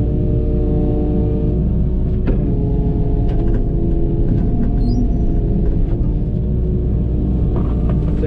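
Excavator running steadily under load, its engine and hydraulics heard from inside the cab, with sharp cracks of brush and branches breaking around two, three and a half, and six seconds in.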